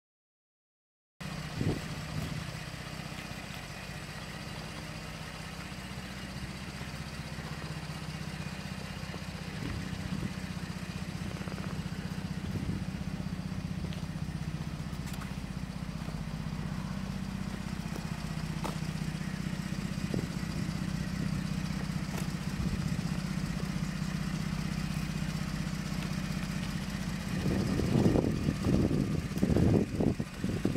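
Ford F150's 3.5-litre twin-turbo EcoBoost V6 idling steadily through a Magnaflow sport exhaust. The sound starts suddenly about a second in. It grows louder and uneven near the end.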